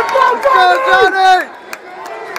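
A man's loud voice calling out in long, drawn-out syllables over arena crowd noise. It stops about one and a half seconds in, leaving the crowd's murmur.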